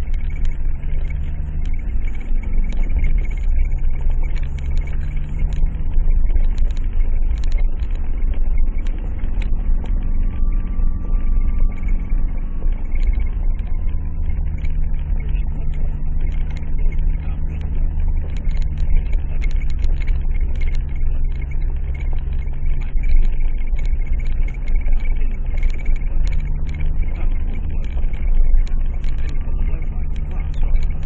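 Vehicle engine running at low revs, heard from inside the cabin, its pitch stepping up and down every few seconds, over a steady low rumble and frequent rattles and knocks as it rides over a bumpy gravel track.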